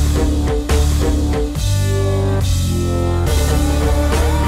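Background rock music with guitar and drum kit, held notes and a steady beat.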